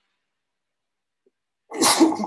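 A man coughing once, loudly, near the end.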